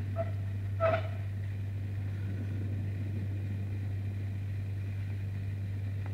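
Steady low machine hum from workshop equipment, with one brief small click or clatter about a second in.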